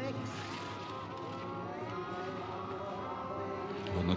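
Crowd din from spectators along the race slope, a steady mass of cheering voices with no single sound standing out.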